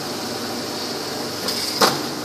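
Steady fan-like hiss, with one sharp click near the end.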